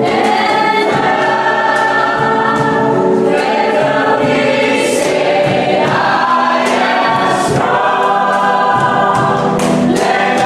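Congregation singing a worship song in chorus with a live band, over a steady beat.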